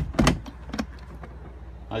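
Glove box latch and lid in a boat's helm console clicking open: a sharp click at the start, a second about a quarter second later, then a few faint ticks as the lid swings down.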